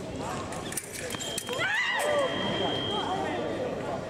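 Electric fencing scoring apparatus sounding one steady high beep for about two seconds, starting about a second in: a touch has registered in a foil bout. Over the beep a fencer gives a loud, high shout that rises and falls, and a few sharp clicks come just before it.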